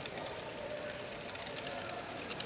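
Running LEGO Great Ball Contraption modules: a faint steady motor whine under a light ticking of plastic balls moving through the track, over hall background noise.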